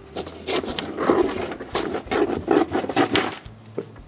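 A pen scribbling a signature on a sheet of paper laid on a cardboard box, in quick, irregular scratchy strokes.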